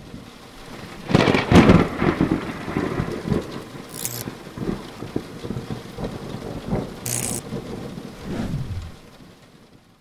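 Thunderstorm sound effect under an intro sting: a loud thunderclap about a second in, then rumbling thunder and rain with two short high hisses, fading away near the end.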